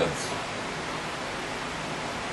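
Steady hiss of recording noise in a pause between sentences, with the end of a man's spoken word right at the start.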